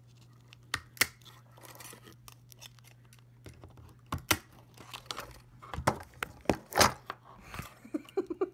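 Cutting and tearing at a small blown speaker and its wiring: a series of sharp snips, crunches and scrapes, growing busier and louder in the second half. A low steady hum stops about three and a half seconds in.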